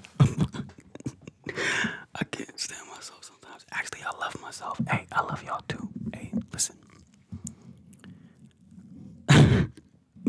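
A man's whispers and mouth sounds right up against the microphone: wordless murmurs broken by many small clicks. A short loud rush of noise comes near the end.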